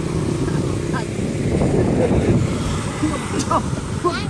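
A motorbike passing on the road, its engine noise swelling about halfway through and then fading, with wind rumble on the microphone.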